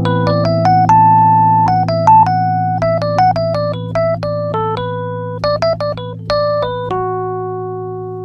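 Keyboard playing an A minor chord held in the low register while a quick melody line drawn from the B minor pentatonic scale runs over it. The line ends on one sustained note near the end, ringing over the chord.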